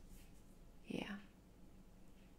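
A voice says a soft "yeah" about a second in. Otherwise there is only faint room tone with a low, steady hum.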